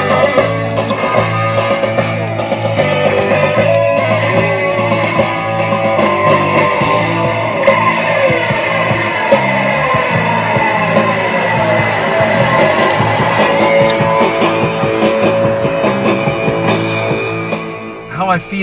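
Rock music led by electric guitar, with guitar lines sliding down in pitch around the middle. It fades down just before the end.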